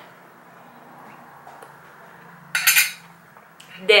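A woman drinking quietly from a glass, then a short clatter of a metal spoon against the drinking glass about two and a half seconds in.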